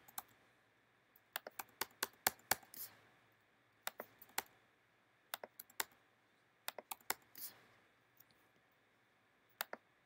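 Typing on a computer keyboard: short bursts of a few quick key clicks, with pauses between them.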